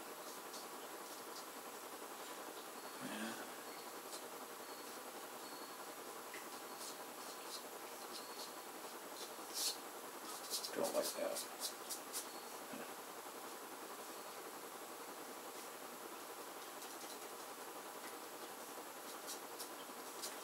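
Faint scratching and light ticks of a soft pastel stick and fingertips working on paper over a steady low hiss, with a short run of clicks about halfway through.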